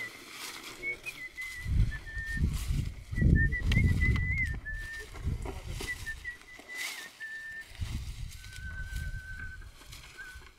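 A high, wavering whistle in short broken notes, ending in a steady trill near the end, over the ploughing of a dry field behind an ox team. Heavy low rumbles come and go, loudest two to five seconds in and again near nine seconds.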